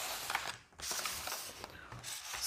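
Faint rustling and light clicks of clear plastic food containers and paper cups being moved about on a table.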